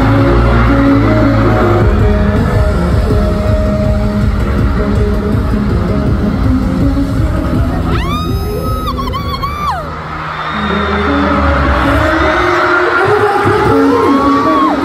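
Loud, bass-heavy concert music over an arena crowd. About eight seconds in, a high-pitched scream close to the microphone is held for about two seconds.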